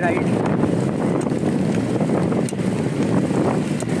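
Wind buffeting the microphone of a handlebar-mounted camera on a moving road bicycle: a steady, loud rushing rumble, with a few faint ticks.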